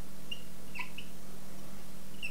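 Whiteboard marker squeaking in three short, high chirps as it writes, over a steady low hum.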